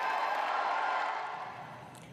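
Crowd applause that begins abruptly and fades away over about a second and a half.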